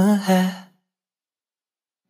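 A singer holds the last word of a Hindi pop song line over soft backing music, trailing off about half a second in. Then the track drops to total silence, a full stop in the song before the next chorus.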